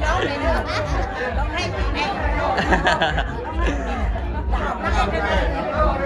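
A group of women chattering and talking over one another, with laughter about four seconds in.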